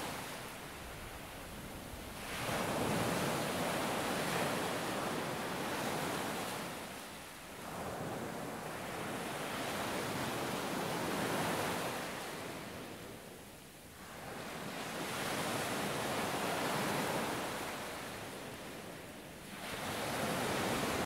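Sea surf washing onto a sandy beach, swelling and fading in slow surges about every six seconds.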